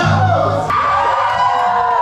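Karaoke: a man singing into a microphone over a loud backing track, with friends whooping and yelling; a long held note fills the second half.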